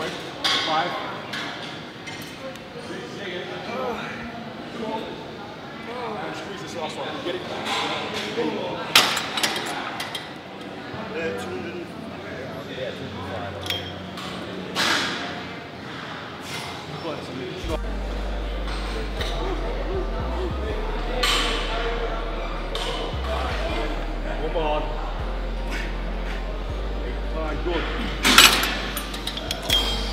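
Gym weights clinking and clanking several times, sharp metallic knocks among a murmur of voices in a large room. From about halfway a steady deep bass of background music comes in.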